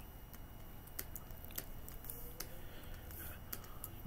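Faint room tone with a low steady hum, broken by a few scattered, sharp, quiet clicks.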